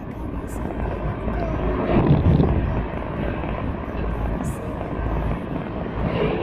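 Steady low engine rumble of a vehicle heard from inside its cabin, with faint voices about two seconds in.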